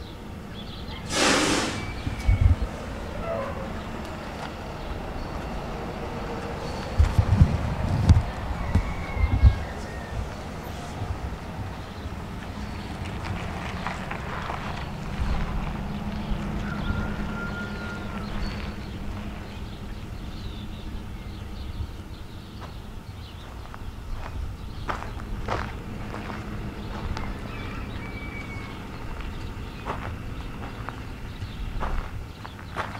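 Outdoor background noise with low, irregular rumbles of wind on the microphone, loudest a few seconds in. There is one brief loud hiss about a second in, and a few faint short chirps.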